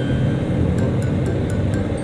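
Steady wind and engine rumble of a motorcycle riding at low speed in traffic, picked up by a camera on the bike, with background music and a light regular tick underneath.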